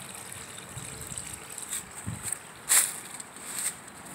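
Faint trickling of water running into a pool, with a few brief knocks or rustles, the loudest about three-quarters of the way through.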